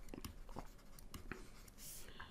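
Faint handwriting sounds: a stylus tapping and scraping lightly on a tablet screen in short, irregular strokes.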